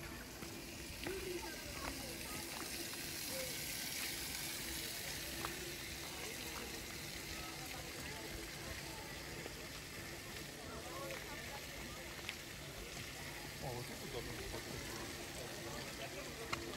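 Faint, indistinct voices of people over a steady outdoor background hiss.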